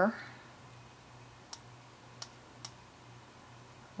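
Three sharp clicks of a computer mouse button, irregularly spaced about a second and a half to two and a half seconds in, over a faint steady hum.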